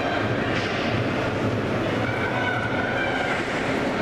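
Steady rumbling background noise of an indoor ice rink, with faint far-off voices in the middle.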